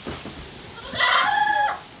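A goat bleats once, about a second in, a single wavering call lasting under a second.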